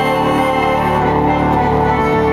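Organ playing steady, held chords.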